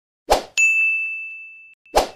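Subscribe-button sound effect: a short whoosh, then a bright bell-like ding that rings out and fades over about a second. A second whoosh starts near the end.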